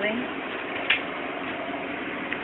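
Cryostat running with a steady mechanical hum, with a single light click about a second in.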